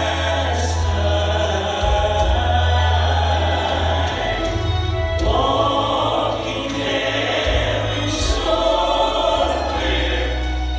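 A gospel song sung by a small group of voices into microphones through a church PA, over accompaniment with deep held bass notes that change every second or two.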